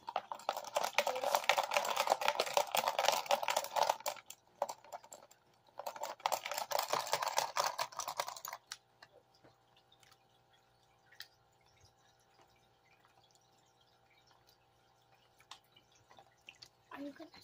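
Gravel and water sloshing and rattling in a plastic gold pan as paydirt is shaken and swirled, in two spells of a few seconds each. It then goes quiet, leaving a faint steady hum and a few scattered drips and clicks.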